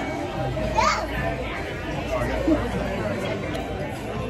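Background chatter of several voices in a diner dining room, with one voice rising in pitch about a second in.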